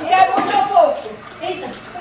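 Indistinct talking voices, with liquid being poured into a cup underneath.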